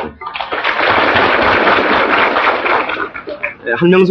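Audience applauding for about three seconds, fading out before the talk resumes.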